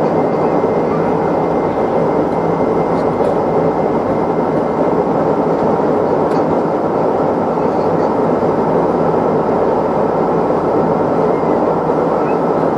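Steady jet engine and airflow noise inside the cabin of a Boeing 747 climbing out after takeoff, with a faint high steady tone over it.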